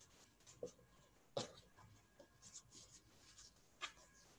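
Very faint handling sounds of a t-shirt being folded and smoothed flat by hand on a table: soft rustles and brushes with a few small ticks, the sharpest about a second and a half in.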